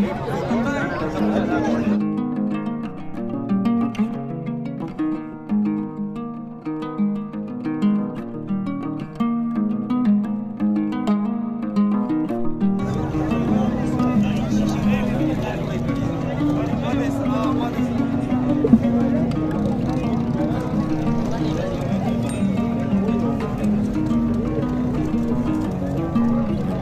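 Background music with a plucked-string melody. Busy market noise with people's voices sits under it at the start, drops out after about two seconds leaving the music alone, and comes back about halfway through.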